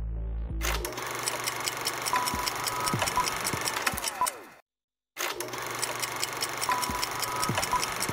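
Television programme bumper sting: electronic music with rapid ticking, short bright tones and falling sweeps. It plays twice, separated by half a second of silence, and cuts off abruptly each time. A short tail of the studio background music is heard just before it starts.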